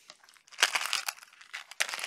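Clear plastic candy-wrapper shaker packets filled with beads and charms crinkling as they are handled and set on a table. There are two bursts of crackle: one about half a second in and a shorter one near the end.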